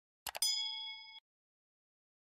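Two quick clicks, then a bell ding with several steady ringing tones that fades for under a second and cuts off abruptly: the click-and-ding sound effect of a subscribe and notification-bell button animation.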